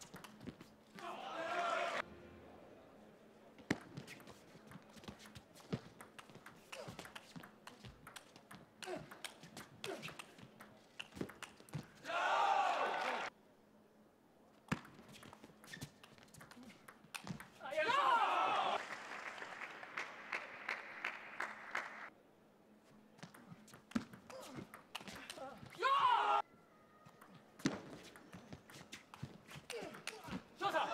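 Table tennis rallies: the ball clicks sharply off the bats and the table in quick runs of strokes. Four short bursts of shouting and cheering fall between points, the third the longest, running on for a few seconds.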